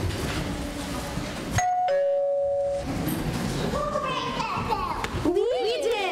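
Two-tone "ding-dong" doorbell chime sounding about a second and a half in: a short higher note, then a lower note held for about a second.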